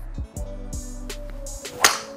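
Background music with a steady beat, and near the end one sharp crack of a golf driver striking a ball off a range hitting mat.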